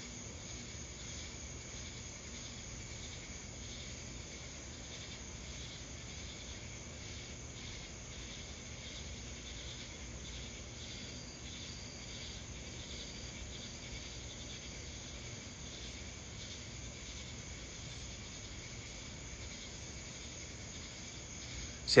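Steady nighttime chorus of crickets and other night insects, a continuous high trilling with no breaks, over a faint low hum.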